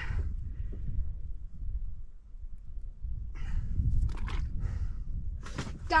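A steady low rumble, with a few short scuffing, crunching sounds in the second half.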